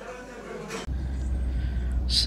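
Steady low road and engine rumble heard from inside a moving Toyota taxi's cabin, starting suddenly about a second in after a brief stretch of restaurant background noise.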